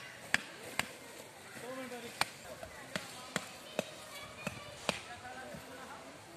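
A large knife knocking a wooden tent peg into sandy ground: about eight sharp knocks at irregular intervals, roughly half a second to a second apart.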